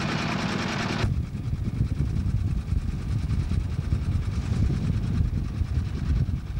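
Small inboard boat engine running under way, with wind and water noise; about a second in, the sound changes abruptly to a lower, uneven rumble, with wind buffeting the microphone.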